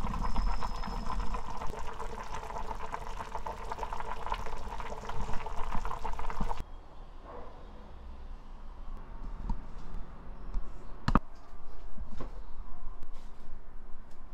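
Kimchi stew bubbling at a full boil in a pot, a dense crackle of small pops and bursting bubbles. It stops abruptly about halfway through, leaving quiet room sound with a single sharp click later on.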